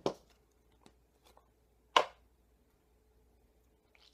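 A snuff can being handled: a sharp snap just after the start and a louder one about two seconds in, with a few faint ticks between, as the lid is worked and pouches are taken out.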